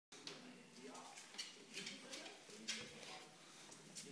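Faint, indistinct voices in a small room, with a few short hissing bursts.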